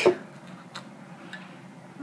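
A person drinking soda from a glass bottle: a few faint, short clicks of swallowing over a quiet room.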